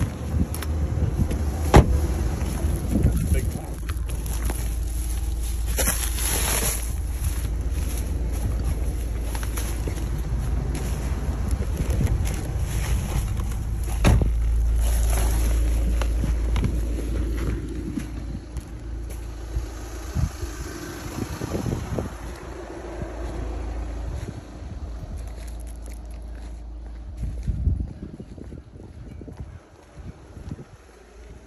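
Car driving: a steady low road rumble and wind noise inside the cabin, with a couple of sharp knocks. The noise falls away in the last third.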